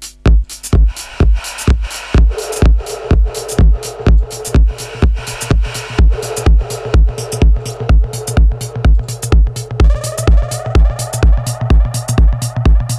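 Electronic dance music playing from two decks of Traktor DJ software being beatmatched by ear: a steady four-on-the-floor kick drum at about two beats a second, the second track nudged into step with pitch bend. About ten seconds in, a rising synth sweep comes in.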